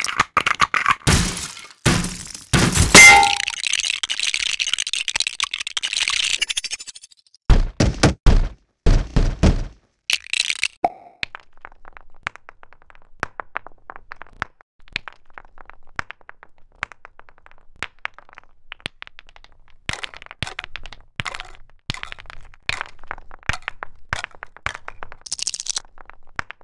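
A run of impact sound effects: sharp cracks and knocks, the loudest hit about three seconds in trailing into a crashing, breaking noise for a few seconds, then several heavy thuds, followed by a long stretch of light scattered clicks and taps.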